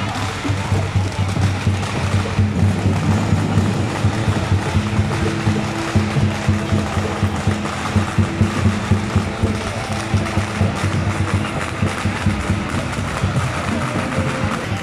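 Temple procession music with a steady rhythmic percussion beat over a constant low hum, mixed with crowd voices.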